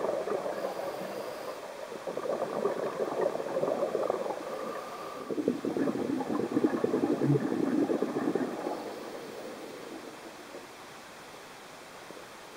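A scuba diver's exhaled air bubbling out of the regulator, heard underwater. It comes in bouts of bubbling, loudest from about halfway to two-thirds in, and thins to a low steady hiss near the end.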